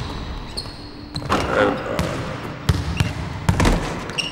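Basketball bouncing on a hard court: a handful of sharp thuds, with a high squeak about half a second in.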